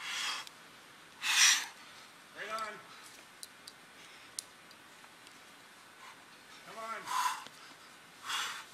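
A climber breathing hard under strain: forceful exhales, the loudest about a second and a half in, and two short grunts of effort, one near three seconds and one about seven seconds in. A few faint clicks fall between them.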